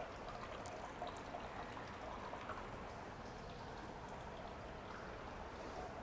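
Faint, steady trickle of water from an indoor tiered tabletop fountain, with a few soft small clicks.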